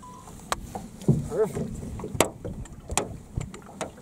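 A few sharp knocks against an aluminum boat as a walleye is handled and let go, the loudest about halfway, with a short exclaimed "Oh" about a second in.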